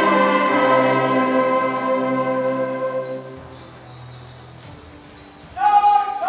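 Brass band music: a held final chord of an anthem fades out about halfway through. After a short lull, a new loud held note begins near the end.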